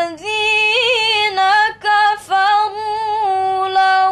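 A girl's solo voice chanting Quranic recitation in the melodic tilawah style. She holds long notes with a trembling, wavering ornament about a second in, with short breaks for breath near the middle.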